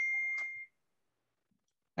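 A single steady electronic beep, one high tone lasting well under a second.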